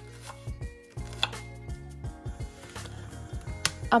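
Background music over a kitchen knife dicing an onion on a bamboo cutting board: a few irregular, sharp knife strikes against the board.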